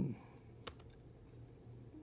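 A single sharp click of a computer key or button, with a couple of fainter clicks just after it, about two thirds of a second in, over a low steady hum. It is the click of a presentation being advanced to the next slide.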